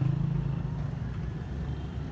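A motor vehicle engine running as a low steady drone that fades over about the first second, with street traffic behind it.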